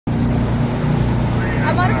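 Small boat's outboard motor running steadily at speed, a constant low drone.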